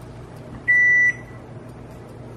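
A single short electronic beep, one high steady tone lasting under half a second, over a low steady hum.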